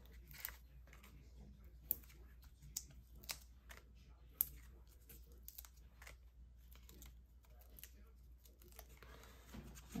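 Faint handling of Stampin' Up! Dimensionals, small foam adhesive dots being peeled off their backing sheet and pressed onto cardstock: soft peeling and rustling with several sharp little clicks, the loudest about two and four and a half seconds in.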